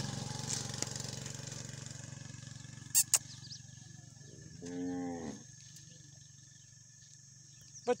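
A young Dhanni cow gives one short, low moo about five seconds in. Two sharp clicks come just before it, over a low hum that fades away in the first two seconds.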